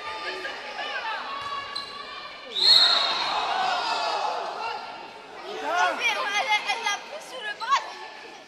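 Sounds of an indoor handball game in a sports hall: a ball bouncing on the court and players calling out, echoing in the hall. A sudden loud burst comes about two and a half seconds in, and a run of louder calls near the end.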